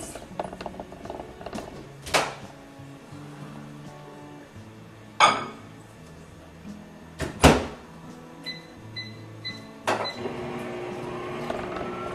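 A microwave oven's door clunks open and shut, the shutting knock being the loudest. Three short keypad beeps follow, and then the oven starts with a steady hum and a faint rising whine.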